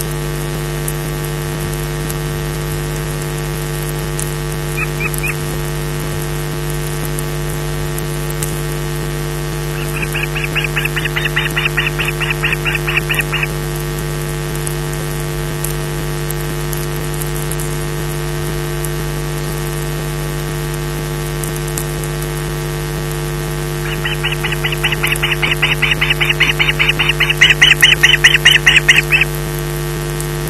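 Osprey calling: two bouts of high calls repeated several times a second, the second longer and growing louder, with a short burst before them, over a steady electrical hum.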